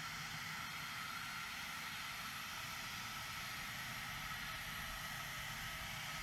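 Faint, steady jet-aircraft noise from a business jet on an airport apron: an even rush with a few thin, steady high whine tones.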